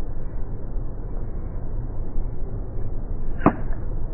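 Slowed-down sound of a golf iron striking the ball on an approach shot: a low, steady rumble, then one dull strike about three and a half seconds in, with a short ring after it.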